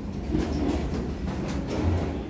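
Low steady rumble with irregular clatter of footsteps and a carry-on suitcase rolling along an airport jet bridge floor.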